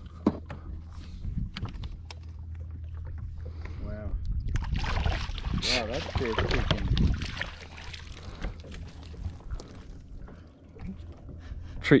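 A hooked bass splashing and thrashing at the surface beside a boat as it is played in and netted, loudest around the middle, over a steady low hum.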